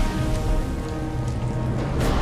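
Steady rain falling, under a film score of held notes over a deep low rumble.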